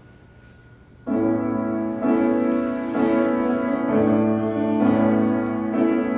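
Grand piano starting a slow song introduction about a second in, with a new sustained chord roughly once a second. A faint steady hum comes before the first chord.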